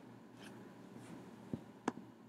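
Faint scratchy strokes followed by two short, soft clicks near the end.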